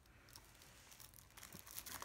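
Faint crinkling and light clicks of a shrink-wrapped plastic Blu-ray case being handled and turned in the hands, a little louder about a second and a half in.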